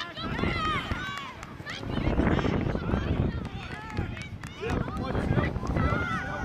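Young footballers' high voices shouting and calling out during play, several overlapping, over a loud low rumbling noise that swells from about two seconds in.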